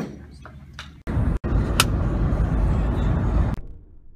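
A few small clicks and a light knock, then, about a second in, loud rumbling road and wind noise heard from inside a moving car, which cuts off suddenly near the end.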